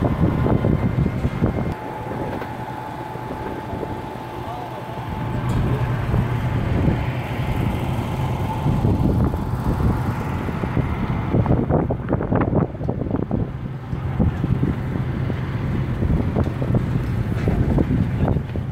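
A steady low engine hum, with wind gusting on the microphone and background voices.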